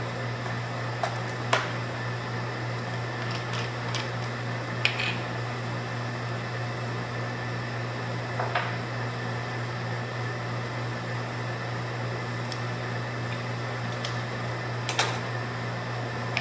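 Steady low mechanical hum of laboratory room equipment, with a few scattered light clicks and taps from handling a micropipette and a screw-cap bottle of water on the bench. The sharpest click comes near the end.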